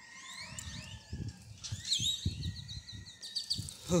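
Birds calling: a mix of chirps and sliding whistles, with a swooping up-and-down whistle about two seconds in followed by a quick run of repeated short notes. Under them runs a low, irregular rumbling on the microphone.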